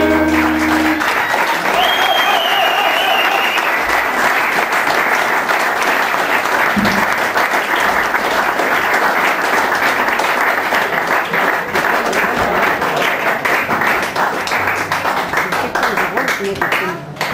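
Audience applause with dense, steady clapping as a song ends. The last acoustic guitar chord and sung note ring out over the first second, and the clapping eases a little near the end.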